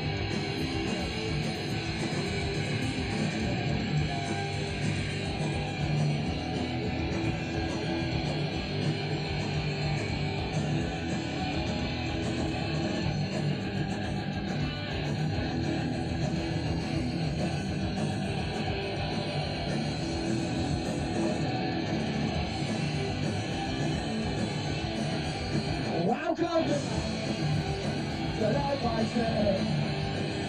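A three-piece punk rock band playing live: distorted electric guitar, bass and drums playing a fast, steady, unbroken stretch of music.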